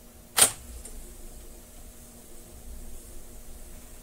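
One sharp mechanical click from a Sony TC-765 reel-to-reel deck's transport control, pressed to start playback of a reference test tape, followed by a low steady hum as the machine runs.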